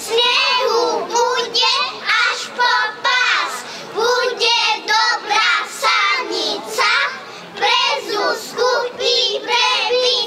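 A group of young children singing a folk song together into microphones, in short, rhythmic phrases.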